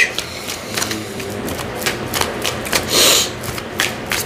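Tarot cards being shuffled by hand: a run of quick card clicks, with a louder rustle of cards about three seconds in.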